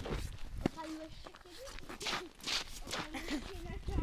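Phone microphone rubbing and rustling against a jacket as it is carried, with a click about a second in, and quiet voices talking under it.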